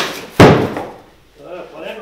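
One loud slap of cardboard about half a second in, dying away quickly, as the tall outer sleeve of a shipping box is pulled off and the inner boxes drop onto the floor.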